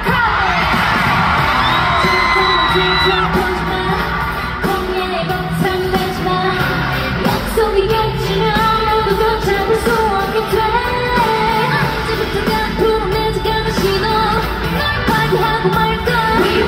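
K-pop girl group's female vocals sung over a pop backing track with a steady beat and heavy bass, played through a concert arena's sound system.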